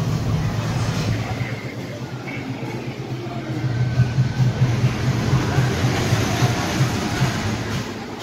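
Street traffic: a steady low vehicle-engine hum, with louder passing-vehicle noise from about the middle onward.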